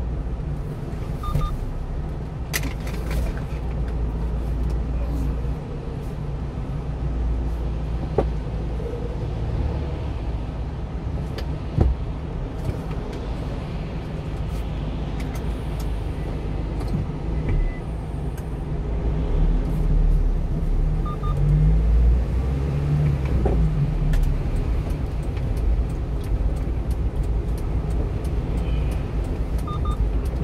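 Small truck's engine and tyre noise heard from inside the cab as it pulls away and drives along a wet road: a steady low rumble that swells a little about two-thirds of the way through, with a couple of sharp clicks in the first half.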